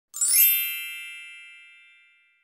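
A single bright chime, the sound of a channel logo sting: a brief high shimmer, then a ringing tone that fades away over about two seconds.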